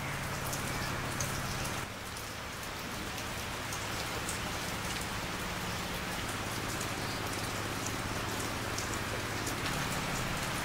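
Steady rain falling, with scattered taps of individual drops.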